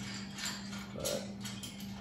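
A few sharp metallic clicks and taps as a bolt is worked by hand on the steel frame of a log-skidding arch, over a steady low hum.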